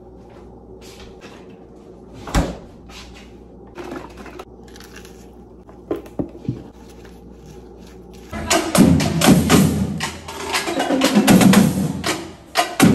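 A few light knocks and clicks of kitchen items being handled over a low steady background. About eight seconds in, marching drums start playing loudly: a rapid run of snare and drum strokes.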